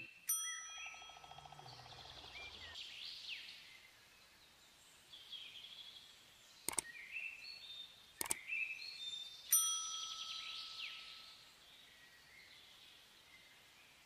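Sound effects of an animated subscribe, like and bell-button overlay: a bright chime of several ringing tones just after the start and again later, two sharp clicks a second and a half apart midway through, and short chirpy sweeps in between.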